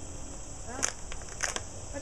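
A steady, high-pitched chorus of insects, with two short sharp sounds a little over half a second apart in the middle.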